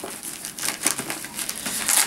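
A fabric bag being handled as its removable zipper top is pushed down inside it: irregular rustling and crinkling of cloth, with a brief louder rustle near the end.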